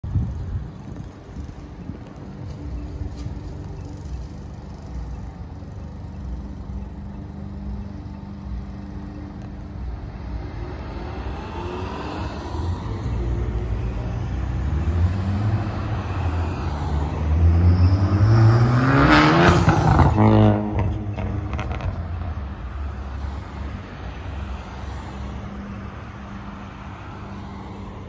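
Road traffic at a signalized intersection: a steady rumble of cars, building as a vehicle accelerates away with its engine pitch rising. It is loudest about two-thirds of the way through, then drops away abruptly.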